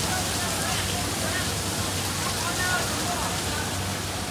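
Open-deck ambience: a steady, even hiss of outdoor noise with a low hum underneath and faint distant voices.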